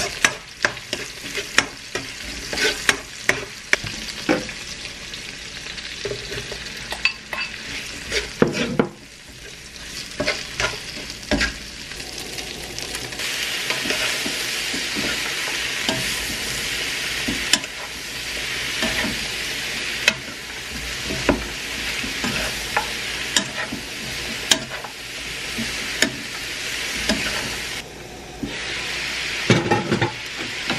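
Food frying in a wok on a gas stove: meat sizzling while a metal spatula clicks and scrapes against the pan. About halfway in, cabbage and carrots are being stir-fried with a wooden spatula over a steadier, louder sizzle.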